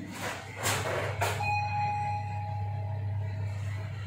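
LG Di1 lift car's steady hum with a few brief rushing noises, then an electronic arrival chime about one and a half seconds in, held for about a second and a half as the car reaches its floor.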